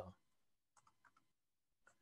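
Near silence with a few faint, short clicks from a computer, spaced irregularly through the pause.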